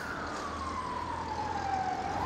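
Emergency vehicle siren in a slow wail, its single tone sliding steadily down in pitch and turning to rise again at the very end.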